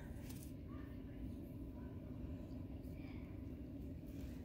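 Quiet outdoor background: a faint, steady low rumble with no distinct events.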